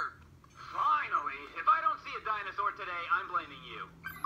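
Speech only: after a short pause, a voice talks steadily, played back through a speaker rather than spoken into the microphone.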